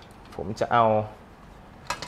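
A sharp metallic click near the end as a perforated sheet-metal tray knocks against the metal frame of a Cooler Master NR200P mini-ITX PC case while it is being fitted back in.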